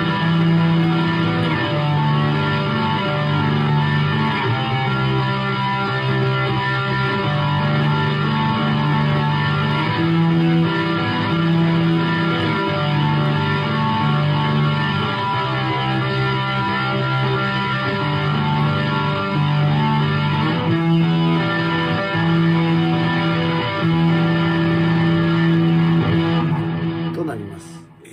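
Fujigen Stratocaster electric guitar played through the Zoom G2.1Nu multi-effects unit's patch 05 'Leading', slowly picking arpeggios (broken chords) on the 5th, 4th and 3rd strings, each note ringing on into the next. The playing stops just before the end.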